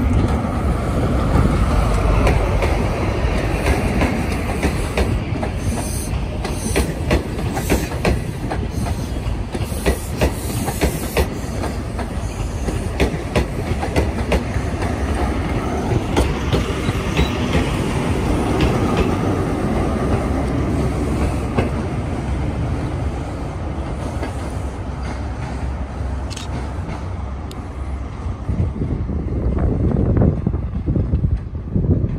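ScotRail Class 43 HST running past at close range: the diesel power car, then its Mark 3 coaches rolling by, with a steady rumble and many sharp wheel clicks over the rail joints. It eases a little near the end.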